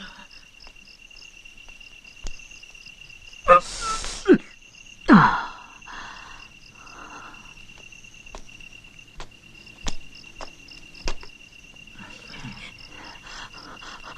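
Crickets chirping steadily in a night ambience. About three and a half seconds in there is a sudden noisy burst, and just after five seconds a brief voiced exclamation. A few sharp clicks follow later.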